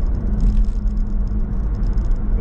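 Steady road and tyre noise inside the cabin of a BMW i3s electric car cruising at motorway speed, a low even rumble with no engine note.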